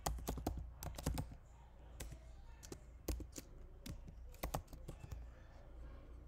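Typing on a computer keyboard: a quick run of keystrokes in the first second or so, a few scattered keys, then another short burst about four and a half seconds in, entering a word into a search box.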